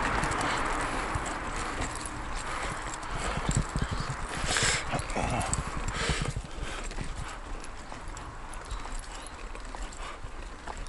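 Wheelchair being pushed along a rough concrete path, its wheels clattering and knocking irregularly over the surface, busier in the first half and lighter toward the end.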